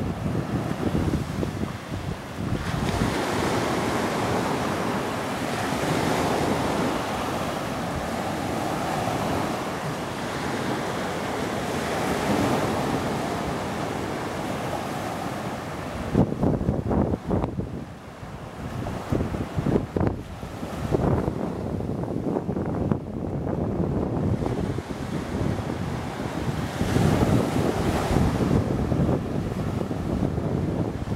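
Low surf breaking and washing onto a sandy beach in a continuous rushing wash that swells and eases. Wind buffets the microphone in gusts, most strongly about halfway through and again near the end.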